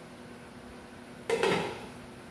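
Glass pot lid set down on a stainless-steel stockpot: one sharp clatter with a short ring about a second and a half in.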